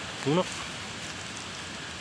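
A steady, even rushing hiss in the open air, with one short spoken word near the start.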